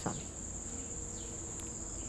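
Crickets chirring in a steady, unbroken high-pitched drone.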